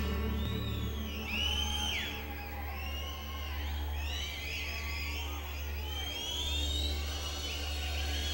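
Live rock band music: a steady low bass drone under high lead notes that swoop and bend up and down, with no singing.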